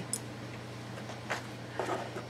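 Quiet room with a steady low hum and a few faint handling clicks as objects are moved.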